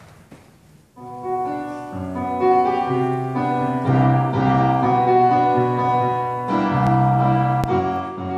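Electronic keyboard playing a piano introduction in chords and bass notes, starting about a second in after a brief hush. A small click sounds near the end.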